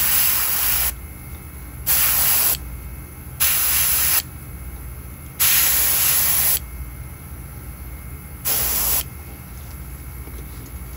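Airbrush spraying paint through a wire mesh stencil in five short bursts of hiss, each about a second or less, the longest a little past the middle.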